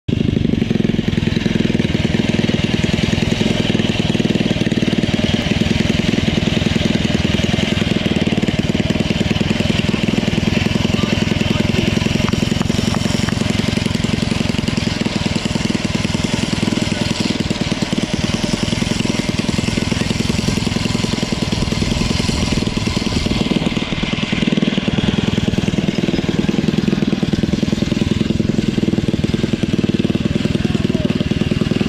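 A 212cc single-cylinder four-stroke engine on a motorized kayak, running loud and steady while it drives the kayak out across the water.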